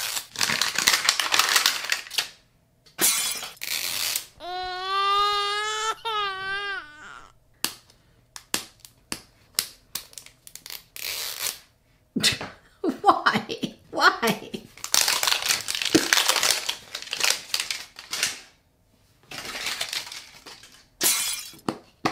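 A crinkly printed wrapper and tape are torn and peeled off a plastic mystery-ball capsule in several bursts of crackling. A voice hums one wavering note about four seconds in, with a few short murmurs later on.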